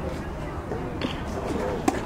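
A baseball smacking into a catcher's mitt once near the end, a single sharp pop, as the batter swings through the pitch, over faint voices and low wind rumble on the microphone.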